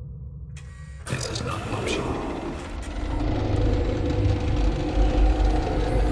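Sci-fi machine sound effect of a robotic interrogation device powering up: a sudden mechanical burst about a second in, then a whirring hum over a deep rumble that grows louder.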